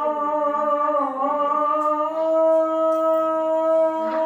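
A single voice chanting in long held notes: one note with a small wobble about a second in, then a step up to a higher note held steady.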